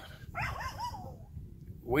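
A dog whining: a quick run of four or five short rising-and-falling whimpers in the first second.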